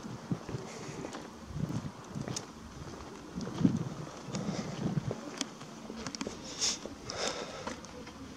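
Outdoor street sound with wind on the microphone and a few soft footsteps and scuffs on a stone pavement as the person filming walks along.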